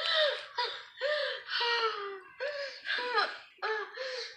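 A woman giggling with her mouth full while chewing a bite of sandwich: a string of short, high-pitched squeaky sounds, about two a second.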